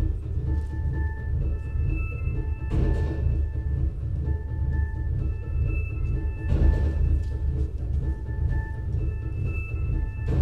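Opening of a live electronic track: a deep, heavy bass drone under a short repeating high synth figure, with a rushing swell that rises about every four seconds.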